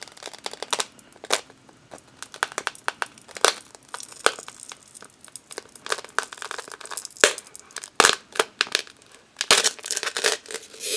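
A wooden stir stick scraping around the inside of a flexible plastic measuring cup of green-pigmented pour-on resin, with irregular sharp clicks and crackles as the thin cup wall flexes and crinkles.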